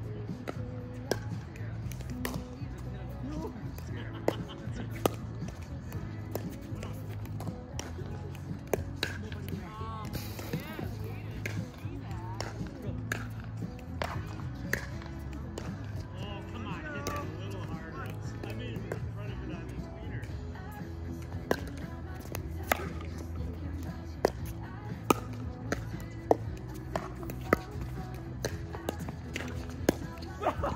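Background music, with sharp irregular pops of pickleball paddles striking the plastic ball during rallies, several in quick succession near the end.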